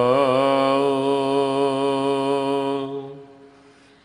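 A man's voice chanting Gurbani, holding one long note with a brief wavering ornament near the start. The note fades away about three seconds in.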